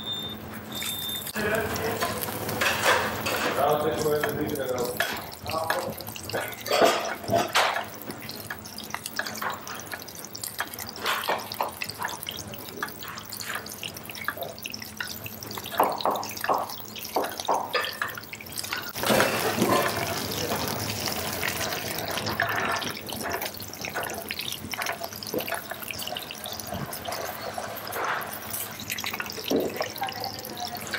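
Sea bass fillet sizzling in oil in a nonstick frying pan, with a metal fork and spoon clicking and scraping against the pan as it is turned and basted.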